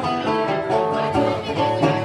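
Live acoustic stringed instrument strummed in a steady rhythm, played as an instrumental passage between sung lines of a folk song.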